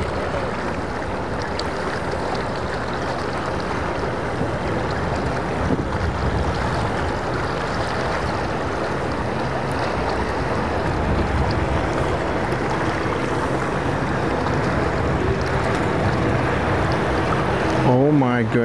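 Outboard engines of tow boats running steadily under load as they bring a swamped center-console boat in alongside, with water rushing along the hulls and wind on the microphone. The engine hum grows a little louder toward the end as the boats come closer.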